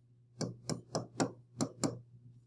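A stylus tapping and clicking on a tablet screen while handwriting a word: about six sharp taps, roughly four a second, starting about half a second in.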